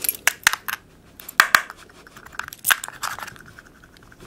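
A bunch of steel and brass keys clicking and scraping against the glass screen of a Samsung P3 MP3 player. A run of sharp clicks, with a rasping scrape in the middle.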